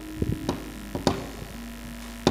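A handful of sharp knocks in the first half, some in quick pairs, from the dalang's wooden knocker (cempala) on the puppet chest, over a low steady hum and faint held tones.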